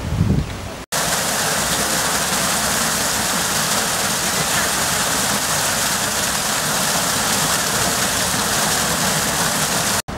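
Steady rushing of running water, an even hiss that starts abruptly about a second in after a brief dropout and holds level throughout.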